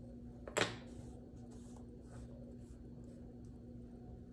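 A magnetic marker clicks once against a whiteboard about half a second in, over faint room tone with a steady low hum.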